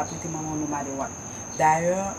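A steady, unbroken high-pitched insect trill runs under a woman's talking voice.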